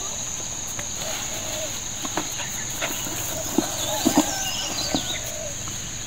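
Rural outdoor ambience: a steady high-pitched insect drone, with a few short bird calls about four seconds in and scattered light knocks.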